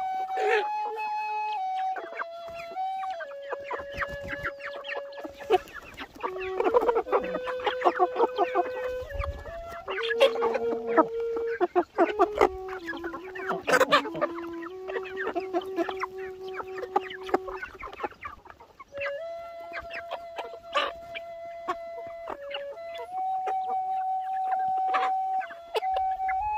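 A flock of hens clucking close by, most busily in the middle stretch, over a background flute melody of long held notes.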